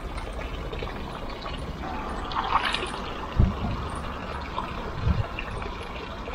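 Fountain water trickling and splashing steadily from a spout into a stone basin, with two short dull low thumps, one just past halfway and one near the end.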